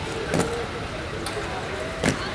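Inline skates landing on a concrete floor after a small sideways hop, a sharp clack about half a second in, over a steady background hum.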